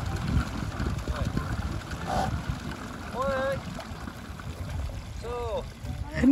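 Wind rumbling on the microphone with water sloshing in the river shallows, and two brief faint calls from voices about three and five seconds in.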